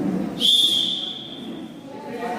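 Referee's whistle: one long, steady, high blast starting about half a second in and fading out after about a second and a half, signalling the wrestlers to begin.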